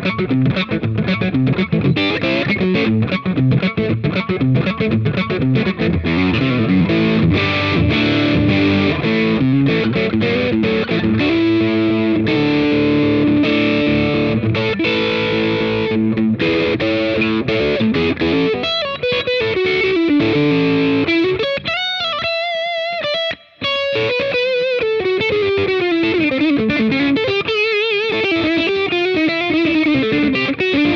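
Gibson Custom Shop 1959 ES-335 semi-hollow electric guitar, both humbuckers on in the middle pickup position, played through an overdriven amp. Busy chordal playing gives way after about eighteen seconds to single-note lines with wide vibrato, with a brief break about two-thirds of the way through.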